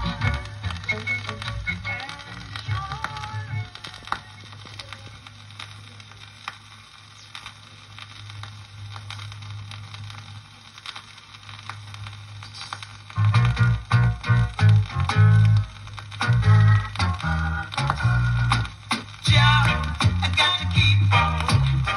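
Reggae playing from a vinyl LP, with clicks of surface crackle. The music drops to a sparse, quieter passage with a steady low bass tone for several seconds, then the full band with heavy bass comes back in about 13 seconds in.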